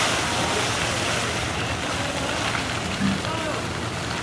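Water splashing and spraying as an elephant wades and kicks through a shallow pool, loudest at the start, with faint voices of onlookers.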